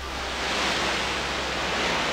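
Steady rush of splashing water spray as a car drives fast through shallow sea water, starting suddenly and running evenly.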